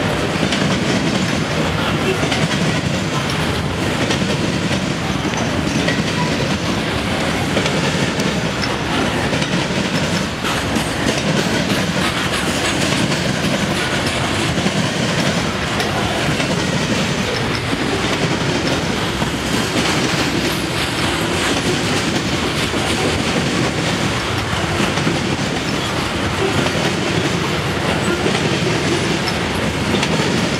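Long CSX freight train of open-top hopper cars rolling past close by: a loud, steady rumble and clatter of steel wheels on rail.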